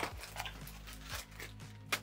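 Bags of sweets being handled and set down on a desk: a sharp click at the start and another near the end, with faint handling noise in between over a faint low steady hum.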